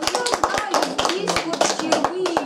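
A small audience clapping in applause, the claps uneven and scattered, with voices talking over them.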